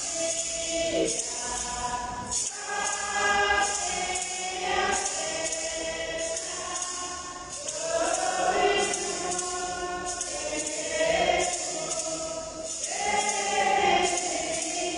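A choir singing a hymn in several voices, with hand percussion keeping a steady beat of about one stroke every three quarters of a second.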